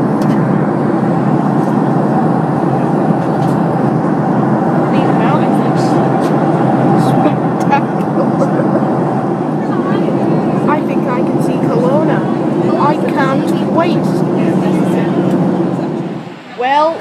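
Steady cabin noise of a jet airliner in flight: engine and airflow noise, with a few faint hum tones running through it. Faint voices of other passengers sound in the background from about five seconds in.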